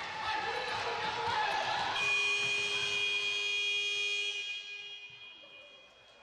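Sports-hall timer buzzer sounding one long steady tone, starting suddenly about two seconds in and fading out over the last second or two.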